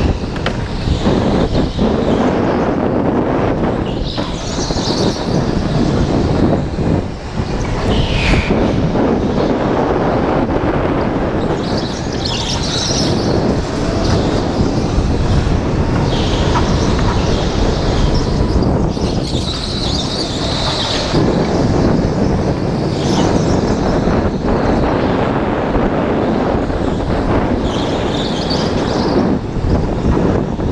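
Go-kart racing flat out, heard from on board the kart: a continuous loud run of drive noise and rushing air on the microphone, with a brief higher hiss or squeal coming back every few seconds through the corners.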